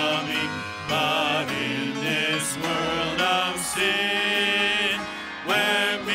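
A church worship team singing a Christmas hymn in slow, sustained phrases with instrumental accompaniment.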